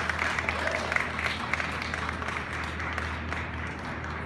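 Audience applauding, gradually dying down.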